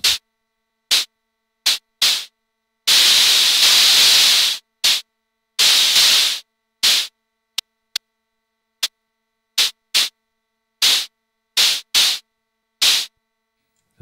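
Pink noise from a Steady State Fate Quantum Rainbow 2 analog noise module, shaped by an attack-release envelope and VCA into percussive hiss hits like hi-hats. The hits come at irregular intervals and are mostly short, with one longer hissing burst of well over a second about three seconds in and another near six seconds.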